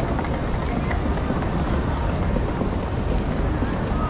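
Busy city street ambience: a steady hum of road traffic with a low rumble, and faint voices of passers-by.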